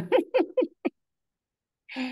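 A person laughing: about five short bursts of laughter in the first second, fading out, with a brief vocal sound near the end.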